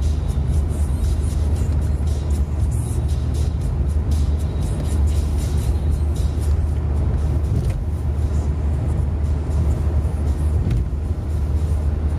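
Steady road and engine noise inside a car cabin at motorway speed: a constant low rumble with tyre hiss. Music plays along underneath.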